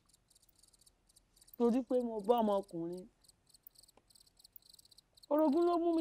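Crickets chirping in a faint, high, even pulsing trill that keeps going through the pauses in talk.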